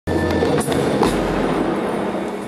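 Live ensemble music: a dense texture of steady held notes over a low bass.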